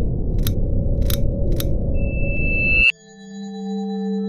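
Animated logo sting of music and sound effects: a low rumbling drone with three sharp clicks, a thin high tone swelling over the next second, then a sudden cut to sustained ringing chime tones.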